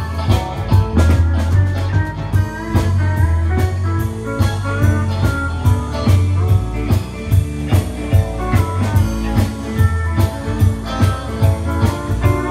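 Live country-rock band playing an instrumental break with no singing: electric guitars and pedal steel over bass guitar and a steady drum beat.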